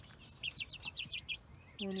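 A young chick peeping: a quick run of short, high, downward-sliding peeps, about eight in a little over a second, then it stops.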